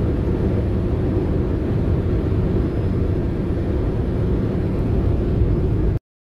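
Steady low drone of engine and road noise inside a goods vehicle's cab cruising at motorway speed. It cuts off suddenly at the end.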